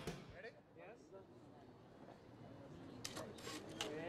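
Faint, indistinct voices in a quiet room, then a short run of sharp clicks about three seconds in, from a photographer's camera shutter during a photo shoot.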